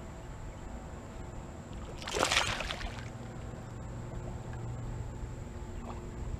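A splash on the water's surface at a topwater bass lure, about two seconds in and lasting under a second. A steady low hum runs underneath.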